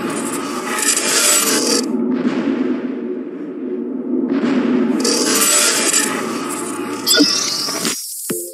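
Logo intro sound effect: a dense, scraping rush of noise that swells twice, about a second in and again from about four seconds, then cuts off suddenly at the end.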